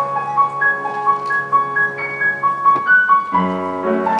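Concert grand piano played solo: a quick melody of short, separate notes in the upper register over held lower notes, with a fuller new chord and bass note struck a little after three seconds in.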